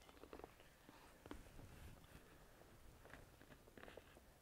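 Near silence with faint scattered handling sounds: a few light clicks and soft rustles of a plate of food and bedding being handled.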